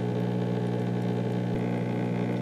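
Steady electrical hum, one unchanging pitch with a stack of overtones.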